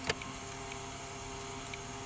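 Steady low hum with a few faint ticks.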